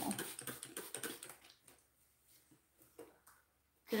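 Fine-mist spray bottle of 91% isopropyl alcohol being pumped in quick repeated spritzes, each a short hiss, dying away after about a second and a half.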